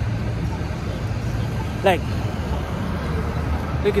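Steady low rumble of city street traffic, with cars passing.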